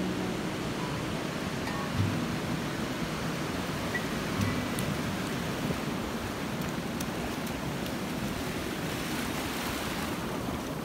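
Small ocean waves breaking and washing up the sand in a steady rush of surf, with a brief low bump about two seconds in.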